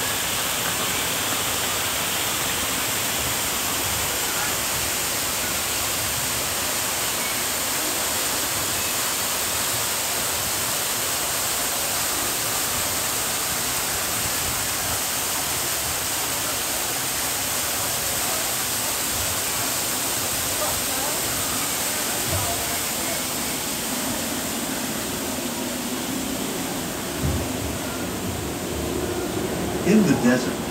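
Steady rush of falling water from an artificial rainforest waterfall and mist effect: an even hiss with no break.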